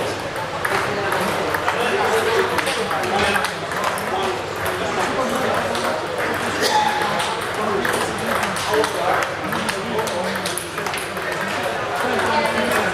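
Table tennis balls clicking off bats and tables in quick, irregular ticks from several games being played at once.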